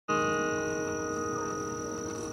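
A sustained musical chord of several steady, ringing tones, starting abruptly and fading slowly.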